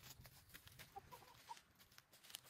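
Chicken giving a few short, soft clucks about halfway through, over faint crackling of dry leaves as it moves through the leaf litter.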